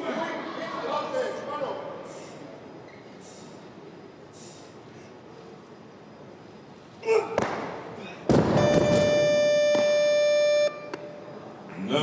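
Crowd voices in a large hall, then about seven seconds in a loud crash of a 186 kg barbell hitting the platform on a missed jerk. A steady electronic buzzer follows, held for about two and a half seconds and cutting off suddenly.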